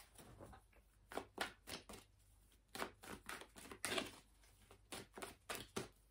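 Tarot cards being handled and laid out: faint, irregular snaps and taps of cards, a dozen or so spread unevenly.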